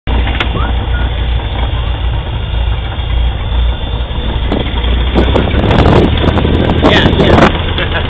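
Small propeller plane's engine running, heard from inside the cabin as a loud steady low drone. About five seconds in, harsher, louder bursts of noise come in over it for a couple of seconds.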